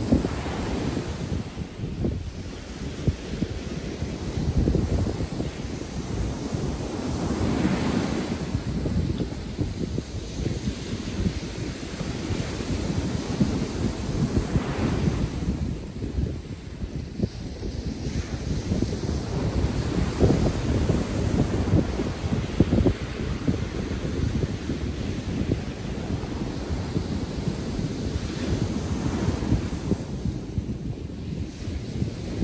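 Ocean surf breaking and washing up the beach, with wind buffeting the microphone. The surf surges louder every several seconds.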